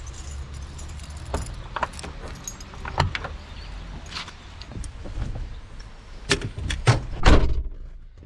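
Keys jangling with scattered knocks and clicks as the door of an old Mercedes-Benz saloon is opened and the driver climbs in. The loudest event is a heavy thud about seven seconds in, the door shutting, after which the outside rumble drops away.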